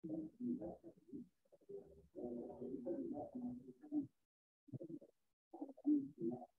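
Faint, low bird cooing in several short phrases with gaps between them, like a pigeon or dove.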